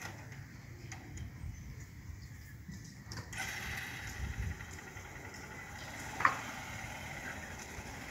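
Motorcycle engine running faintly at low speed, a low rumble without a clear pitch. A brief sharp sound stands out about six seconds in.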